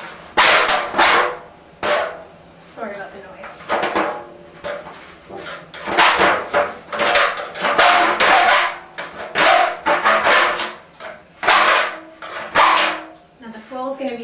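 A knife cutting a hole in a disposable aluminium foil roasting pan: an irregular run of loud, sharp crinkling and scraping bursts as the blade works through the thin foil.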